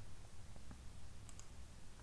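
A few faint computer mouse clicks, two of them close together about a second and a half in, over a steady low hum.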